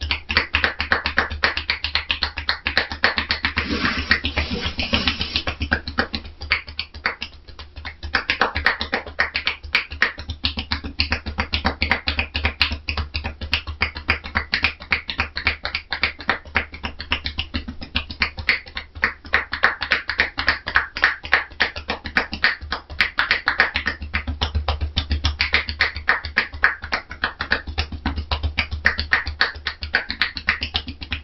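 Rapid rhythmic hand percussion massage (tapotement) on a seated woman's shoulders and head: quick, light, slapping taps of the therapist's loosely clenched hands, many per second. There is a brief pause about seven seconds in.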